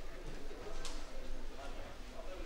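Indistinct background chatter of several people in a hall, with a short sharp click a little under a second in.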